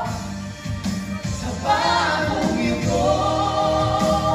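Three singers, two men and a woman, singing a wedding ballad together in harmony through microphones over an instrumental accompaniment. The voices ease back in the first second or so, then come in fuller and louder a little under two seconds in.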